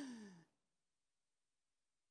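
A man's voice trailing off in one drawn-out, falling tone in the first half second, then near silence.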